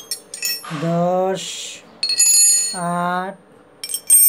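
Chromed steel L-shaped socket wrenches clink against each other and the tile floor as they are handled. Each strike rings briefly, and the loudest comes about two seconds in. A man's voice draws out two syllables between the clinks.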